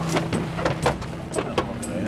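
Several irregular clicks and knocks from a car's driver door being handled and pulled open.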